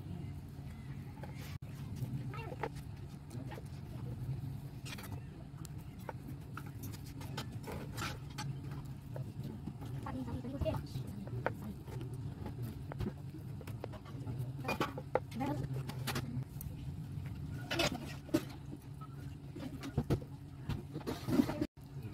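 Steel knife cutting through set barfi in a plastic tray, with scattered short taps and scrapes as the blade meets the tray, over a steady low hum.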